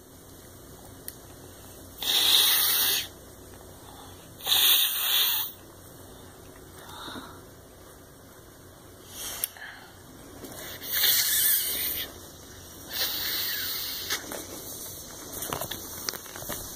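A child blowing by mouth into a large plastic inflatable: four breathy puffs of air about a second long each, plus a weaker one, with quiet gaps between.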